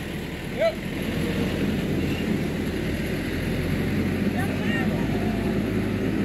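A motor vehicle running nearby: a low, steady rumble that grows louder through the middle and eases off near the end.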